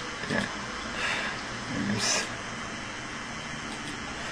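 A man's soft, breathy chuckles and breaths close to the microphone as his laughter tails off, with the brightest exhale about two seconds in, over a steady low hiss.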